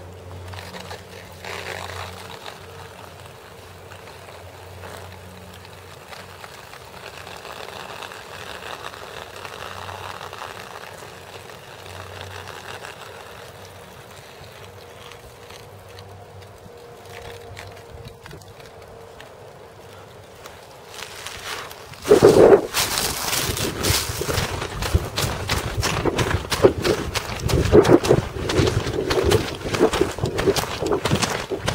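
Quiet woodland background with a faint low hum for about twenty seconds. Then footsteps start suddenly, with loud, irregular crunching and rustling through dry undergrowth, close to the microphone.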